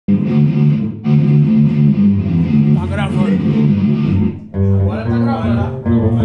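Electric guitar and bass playing a loud riff, breaking off briefly about a second in and again around four and a half seconds. A man's voice comes in over the instruments near the end.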